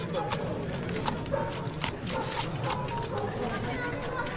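Crowd of people talking together, with scattered sharp clicks and clinks through the murmur.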